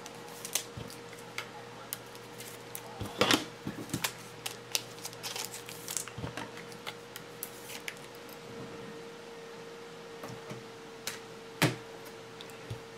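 Scattered light clicks and taps of trading cards and hard plastic card holders being handled on a table, over a faint steady hum.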